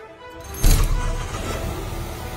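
Ford Mustang's engine started with the key: it fires up about half a second in with a loud burst, then keeps running.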